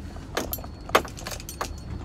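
Keys jangling with a few sharp clicks inside a car cabin, the loudest click about a second in, over the low steady hum of the car's engine.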